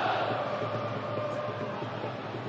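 Football stadium crowd noise: a steady sound from the stands, with fans singing or chanting faintly.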